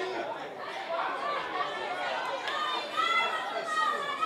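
Overlapping chatter and calls from several voices at a youth football pitch, some of them high-pitched shouts, growing more prominent in the last second or so.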